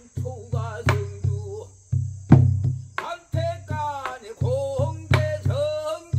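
A man singing Korean traditional song (sori) in held, wavering notes, accompanied by a buk barrel drum. The drum gives a steady run of low thuds on the head and sharp stick clicks on the rim.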